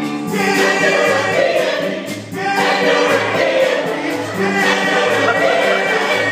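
Choir singing in parts over a steady low bass beat that pulses about one and a half times a second, with a brief dip in the music about two seconds in.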